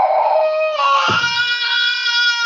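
A toddler crying: two long, high wails held without words, the second starting a bit under a second in.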